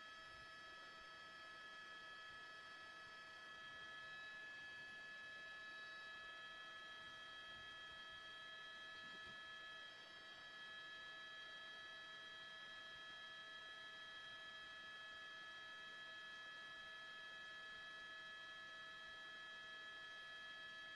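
Near silence, with only a faint, steady high-pitched electronic hum of several tones.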